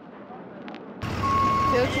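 A faint rising rush with a light click, then an abrupt cut about halfway to loud street noise beside a bus, with a low engine hum. A steady beep sounds for under half a second, and a voice says "okay" near the end.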